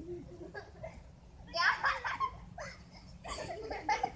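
Children's voices calling out and laughing while they play, with no clear words: two louder outbursts, one about one and a half seconds in and one near the end.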